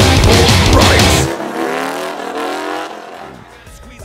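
Heavy rock music for about the first second, then it drops out and a Harley-Davidson motorcycle engine is heard alone, its note gliding in pitch and fading away toward the end.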